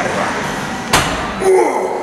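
A single sharp knock about a second in, with a man's voice sounding around it.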